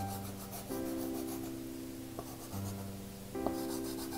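Soft scraping of a Terry Ludwig soft pastel stick rubbed across pastel paper, faint under background music holding sustained chords.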